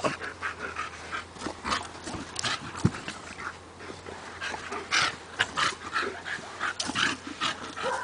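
A German Shepherd and a Staffordshire Bull Terrier play-fighting in a sand pit: a dog panting, with paws scuffing and kicking through the sand in short, uneven scrapes.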